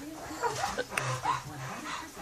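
A few short, high whimpering cries that bend up and down in pitch, with faint low voices under them.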